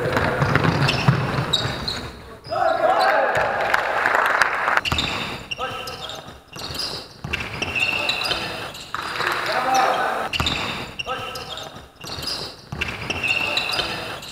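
Basketball bouncing on the court during play in a large gym hall, with repeated sharp strikes, mixed with players' voices calling out.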